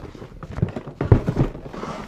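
A large cardboard box being handled and opened: a series of irregular knocks and bumps of cardboard against the table.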